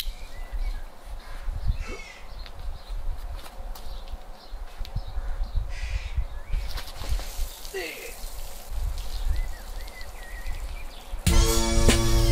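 Outdoor ambience with a low rumbling noise and a few faint short chirps, then near the end a man's voice sings out one loud held note in celebration as the sprinkler starts working.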